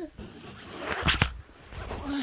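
Clothing and fabric rustling and rubbing close to the microphone as a baby is picked up and handled, building to a sharp scrape a little past one second in, then fading.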